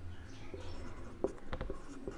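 Marker pen writing on a whiteboard: faint scratching strokes, with a few short, sharp ticks of the tip against the board in the second half.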